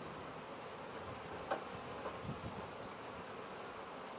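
Honey bees flying around the hive entrances, a steady faint buzz, with one light knock about one and a half seconds in.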